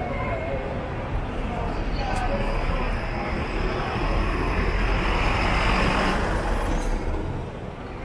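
A city bus passing close by in street traffic: engine and road noise swell to a peak about five to six seconds in, with a thin high whine over it, then fall away near the end.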